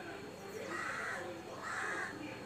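A crow cawing twice, two harsh calls about a second apart.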